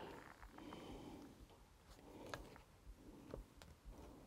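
Near silence with faint handling noise and a few soft clicks as a plastic fan blade is worked onto the fan motor's keyed shaft.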